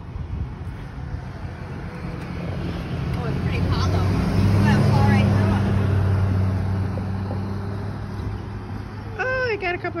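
A motor vehicle passing by, its low engine and road hum swelling to its loudest about halfway through, then fading away.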